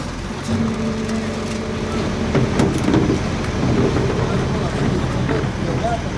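Rear-loading garbage truck running with a steady low hum, with voices talking around it.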